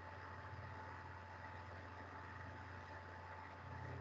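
Faint steady low hum with hiss and a thin steady high tone: the background noise of the microphone's room while no one speaks.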